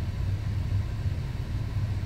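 Car engine idling, a low steady rumble heard from inside the car's cabin.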